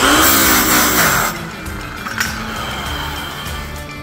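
Electric rotary polisher spinning a used buffing wheel with a buff rake held against it to roughen up the buff's edge: a loud, harsh rasp for about the first second, then the motor's whine falls as it coasts down after the trigger is released. Background music continues underneath.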